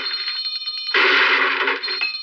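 A small hand bell rung rapidly for about a second, a bright high ringing, then the orchestral cartoon score comes back in.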